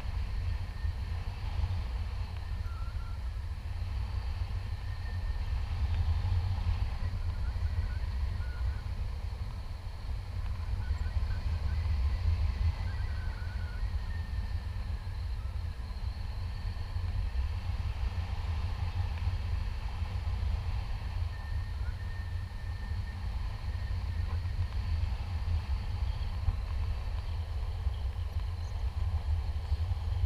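Wind buffeting an action camera's microphone in paraglider flight: a steady, deep rumble of wind noise with small swells in strength.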